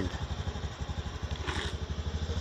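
A motorcycle engine running with a fast, even pulsing beat.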